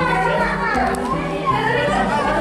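Children's voices, chattering and calling, over music with held bass notes that step from one note to the next.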